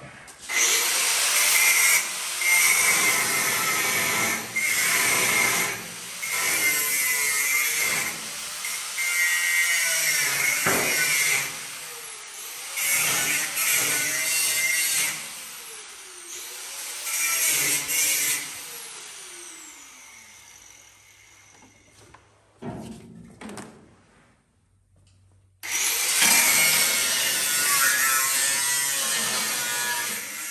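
Grinder with a cutting wheel cutting into a steel car chassis in repeated bursts of a few seconds, with a steady high whine; after several bursts the pitch falls as the wheel spins down. It stops for several seconds about two-thirds of the way through, then cuts again near the end.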